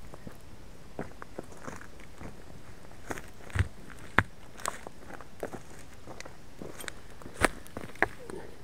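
Scattered knocks and thuds of rocks being picked up and set down around a small campfire to build a stone fire-pit ring, about ten at irregular intervals, the loudest a little after the middle and near the end.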